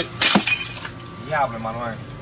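Full glass bottle smashing on a hard porch floor about a quarter second in, the shards ringing briefly after the crash. A man's voice follows briefly.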